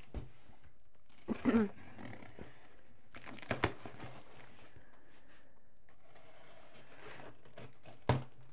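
Cardboard shipping box being opened by hand: a few short tearing and crinkling sounds from the flaps and packing tape. A brief sound from a person's voice comes about a second and a half in.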